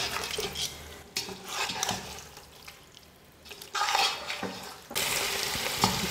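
A spatula stirring and scraping chicken pieces through a thick masala in a stainless-steel pot, with the knocks of the spatula and a frying sizzle. It goes quieter about halfway through, then the sizzle picks up again.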